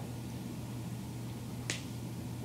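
A single sharp click near the end, over a steady low room hum.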